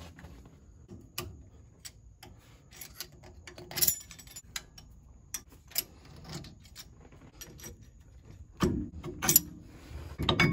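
Scattered light metallic clicks, taps and rubbing of brake pads and their retaining hardware being worked loose in a front disc brake caliper, with a louder clatter about four seconds in and again near nine seconds.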